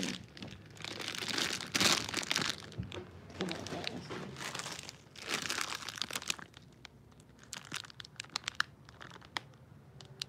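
Plastic wrapping on a package of crispbread crinkling as it is handled and pulled at, in loud bursts. Near the end it gives way to scattered small crackles and clicks.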